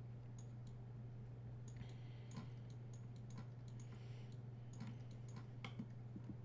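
Faint, irregular clicks from a computer mouse and keyboard in use, over a steady low hum.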